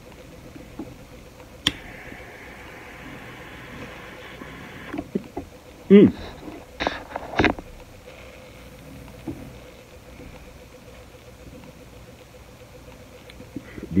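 Butane torch lighter clicked on, its jet flame hissing steadily for about three seconds as a joint is lit. A hummed 'mmm' and two short, sharp breaths follow.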